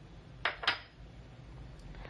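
Two brief light clicks about a quarter second apart, from things being handled on a tabletop, over a low steady room hum.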